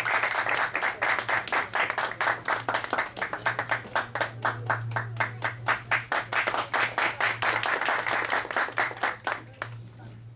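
Audience applauding, the clapping thinning out and dying away near the end, over a steady low hum.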